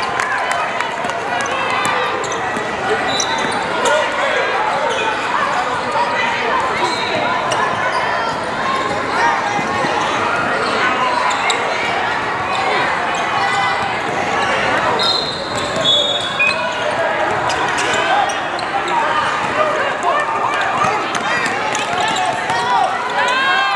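Basketballs bouncing on a hardwood court amid an indistinct hubbub of many players' and spectators' voices, echoing in a large hall.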